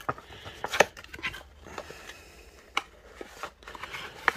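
A small cardboard box being opened by hand and its paper contents handled: soft rustling of cardboard and paper with scattered light clicks and taps.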